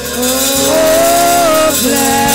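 Gospel music: a voice holds a long note that glides up and then breaks off near the end, over a rattling shaker.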